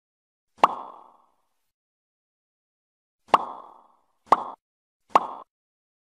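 Sound effects of a subscribe-button animation: four short, sharp pops. The first comes about half a second in, and the other three follow about a second apart near the end. Each dies away within a fraction of a second, with dead silence between them.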